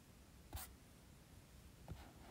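Near silence: room tone, with one faint short click about half a second in and another just before the end.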